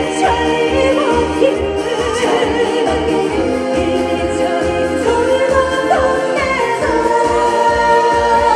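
A woman singing a Korean trot song live into a handheld microphone over amplified backing music with a steady beat; her voice wavers with vibrato and slides between notes.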